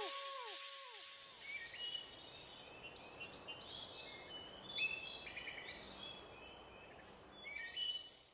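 Faint birdsong: a string of short, high chirps and trills, some sliding up or down in pitch, beginning about a second and a half in and continuing with small pauses.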